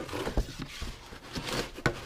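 Cardboard packaging being handled: rustling and scraping with a few light knocks, the sharpest near the end.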